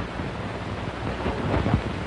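Rumbling, hissing noise with no clear pitch, swelling about a second and a half in.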